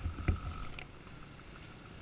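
Dirt bike engine running at a low idle, heard as a low rumble through a helmet-mounted camera, with a single knock about a quarter second in.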